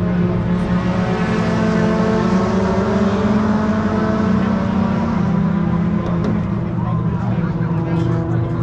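Race car engines idling steadily, with a deep, even engine note that holds throughout.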